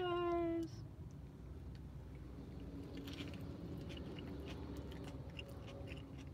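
A person biting into a soft shrimp taco and chewing it, with small wet mouth clicks over a low steady hum. A drawn-out voice sound opens the stretch.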